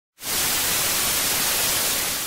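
Television static sound effect: a loud, steady hiss of white noise that starts abruptly just after the beginning.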